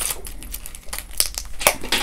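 Plastic budget binder being handled: the clear vinyl cover crinkling, with a few sharp clicks and taps.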